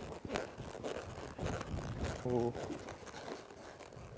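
A horse's hoofbeats on soft arena dirt, irregular and muffled, as it lopes and turns around a barrel. A short voice sound comes a little past halfway.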